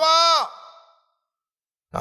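A man's voice holding a long, drawn-out syllable at the end of the exclamation "Deva Yehova" (O God Jehovah), fading out about half a second in. His speech starts again at the very end.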